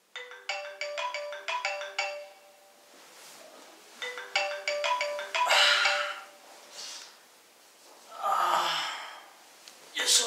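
Smartphone alarm tone ringing: a quick tune of short notes, played twice with a pause between. Breathy noises from the waking man come between the rings, the second sliding down in pitch near the end.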